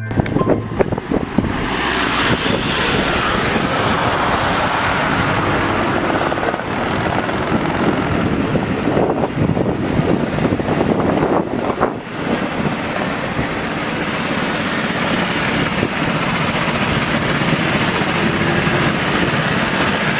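Racing cars' engines running, a loud, steady, dense din with a brief dip about twelve seconds in.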